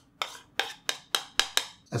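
Metal spoon tapping against a ceramic bowl while scraping yogurt out into a glass jar: a quick run of short, sharp clinks, about three or four a second, coming a little faster near the end.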